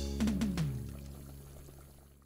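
Sitcom-style transition music sting: two quick struck notes that slide down in pitch, then a held chord that rings out and fades away.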